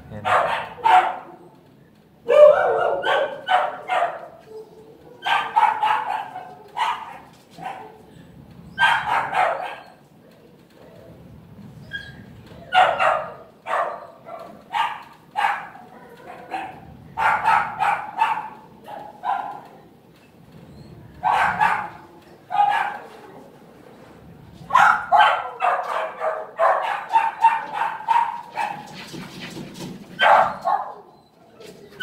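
Dogs barking in repeated quick bursts of several barks, recurring every second or two with short lulls between, as in a shelter kennel.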